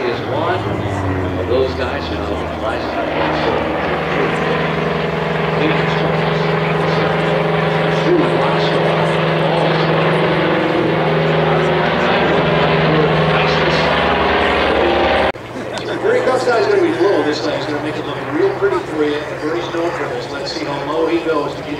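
Propeller warbird's piston engine droning steadily as it flies a display, with voices over it. The sound cuts off abruptly about three-quarters of the way through, and voices carry on alone.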